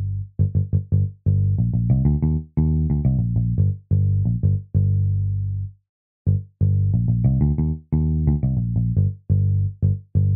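Electric bass notes from GarageBand's 'Liverpool' virtual bass on an iPad, played on the touch fretboard: an improvised bass line of separate plucked notes. It stops briefly about six seconds in, then goes on.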